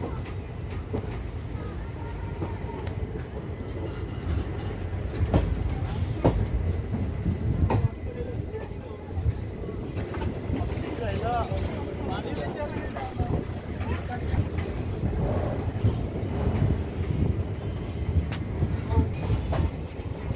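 Passenger train running along the track, heard from an open carriage door: a steady low rumble of wheels and carriage, occasional clicks over rail joints, and a thin high squeal that comes and goes, as the train draws into a station.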